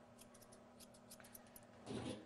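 Faint, quick snips of grooming thinning shears cutting a Shih Tzu's long coat, several a second at an uneven pace, with a brief louder rustle near the end.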